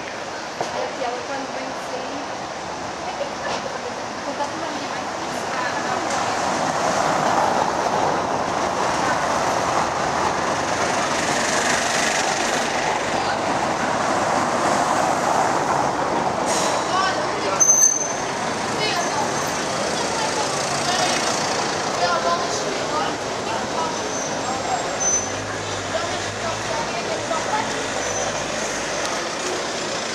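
Vintage electric street tram rolling slowly along its rails, its running noise swelling as it passes close and then easing. There is a short, sharp metallic sound about 18 seconds in, with street voices under it.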